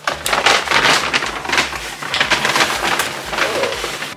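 Brown paper shopping bag rustling and crackling as it is handled and rummaged through, with irregular crinkles and low handling bumps throughout.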